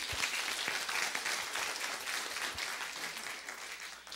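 Audience applauding in a large hall, a steady patter of many hands that slowly dies away toward the end.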